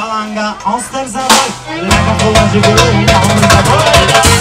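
Live band music: wavering fiddle and electric guitar lines over bass and drums. For the first couple of seconds the bass and drums mostly drop out, then a cymbal hit leads the full band back in about two seconds in.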